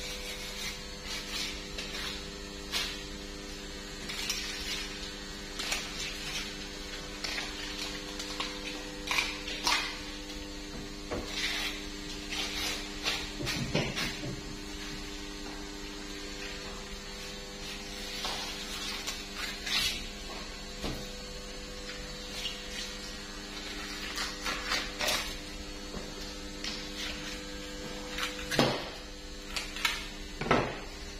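Knife cutting into a large yellowfin tuna while it is filleted: irregular scraping and slicing strokes with occasional sharper taps, over a steady hum.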